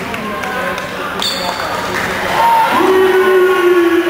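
Spectators' voices echoing in a school gym, with a short high whistle about a second in. Near the end, one voice holds a long, loud note that begins to fall in pitch.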